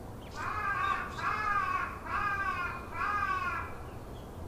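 A bird calling four times in a row: evenly spaced calls, each a little under a second long, slightly falling in pitch at the end.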